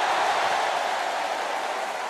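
Tennis stadium crowd applauding and cheering in a dense, steady wash of noise that dies away near the end.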